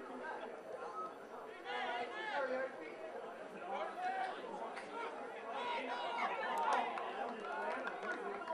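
Men's voices shouting and calling across a rugby league field, distant and unintelligible, loudest about two seconds in and again from about five and a half seconds.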